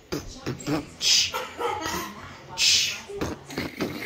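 A person beatboxing a simple beat with the mouth: short low thumps and clicks, with a loud hissing 'tss' about every one and a half seconds.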